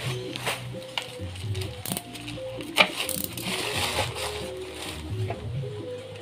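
Quiet background music with scattered rustling and clicks from keris blades and their paper and cardboard packaging being handled on a tiled floor; one sharp click stands out about three seconds in.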